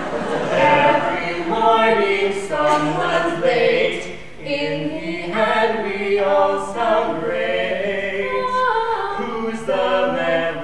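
A man and a woman singing a cappella in harmony, holding notes that step from pitch to pitch.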